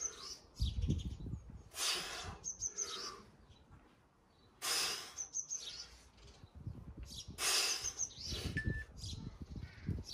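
A small bird chirps a quick three-note call that repeats about every two to three seconds. Louder short rushes of hiss and a few low thuds come between the calls.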